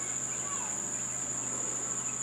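Crickets trilling in one steady, unbroken high-pitched tone, with a faint low hum beneath.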